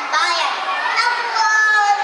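Children's voices speaking, high-pitched and continuous.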